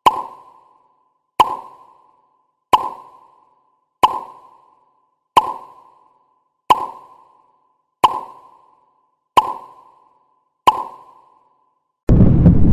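A cartoon pop sound effect repeated nine times at an even pace, about one every 1.3 seconds. Each is a sharp click with a short ringing tone that dies away quickly, one pop for each numbered pineapple as it appears in a count to ten.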